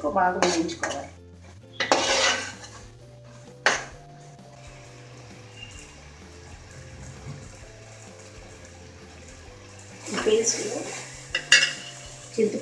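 Steel spoon scraping and clinking against an aluminium pot while stirring a thick masala paste, with a sharp clink a little under four seconds in as the spoon is set down. More clatter of kitchenware against the pot comes near the end.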